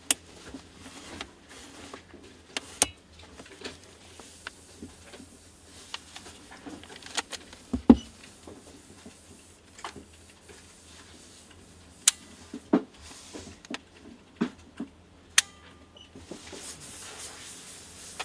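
Nikon AF-S DX NIKKOR 18-55mm VR II kit lens and camera body handled with gloved hands: scattered sharp clicks and soft rubbing from the lens's rings, switches and bayonet mount. A loud knock about eight seconds in, and a stretch of rubbing near the end as the lens is fitted back onto the body.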